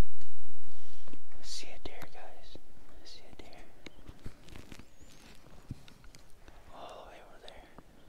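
A deep, low boom that fades away smoothly over about five seconds, with soft whispering over it.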